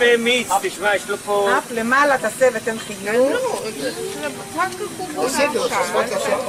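Flying foxes (giant fruit bats) squawking and hissing, a run of short harsh calls with quickly wavering pitch, one after another throughout.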